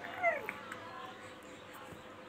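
Baby boy giving one short whiny cry that falls in pitch, about a quarter second in; faint fussing after.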